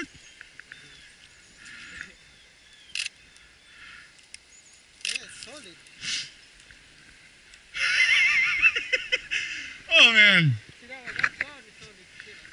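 Thin pond ice sounding: faint high chirps and a few sharp ticks and cracks coming from the frozen surface.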